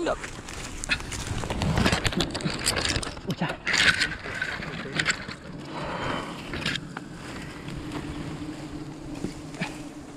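Irregular knocks, scrapes and rustles of a climber moving against tree bark and branches, with a short louder rustle about four seconds in and a faint steady hum in the second half.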